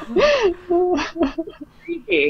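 A woman laughing in several short bursts of voice that glide up and down in pitch.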